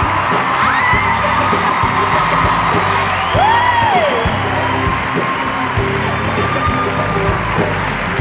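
Live band playing an upbeat song intro with a steady drum beat, while the audience cheers and claps, with whoops about a second in and again around three and a half seconds in.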